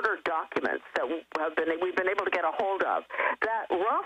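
Speech only: one person talking continuously in a radio broadcast, the voice narrow and cut off at the top like a telephone line.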